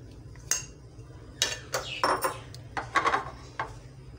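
Kitchenware clatter as the last of the raita is emptied from a plastic bowl into a glass baking dish: a sharp click about half a second in, then a few clusters of knocks and scrapes of bowl and utensil against the dish.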